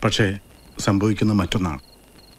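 Crickets chirping in short, repeated high trills under a man's voice.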